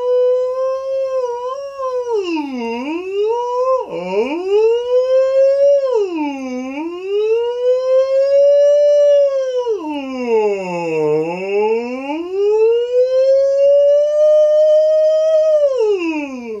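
A man's voice singing one long unbroken 'oh' in slow pitch glides, a vocal siren warm-up: held high in head voice, sliding down toward chest voice and back up four times, with a sudden jump in the voice about four seconds in as it crosses the break.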